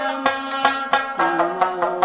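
Afghan rabab playing a quick plucked melody in a Pashto folk song, note after note ringing sharply. A held lower note joins about halfway through.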